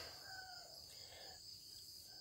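Near silence: faint background ambience with a steady, thin, high-pitched band like insects chirring.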